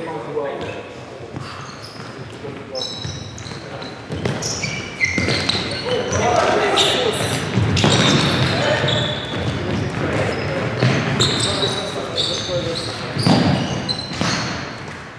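Futsal ball being kicked and bouncing on a wooden hall floor, with many short high squeaks of shoes on the court and players calling out, all echoing in the hall.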